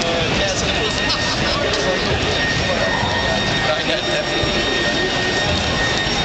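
Loud, steady rushing outdoor noise with indistinct voices mixed in, and a thin, steady high-pitched tone over it.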